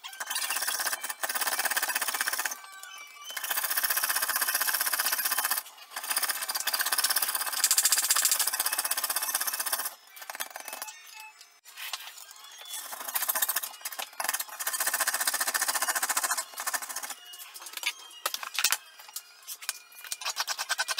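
Jeweller's piercing saw cutting a brass clock back-cock blank held on a bench peg: runs of sawing a few seconds long, broken by short pauses.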